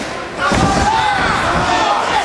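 Heavy thud about half a second in as one MMA fighter lifts and slams the other, over spectators shouting.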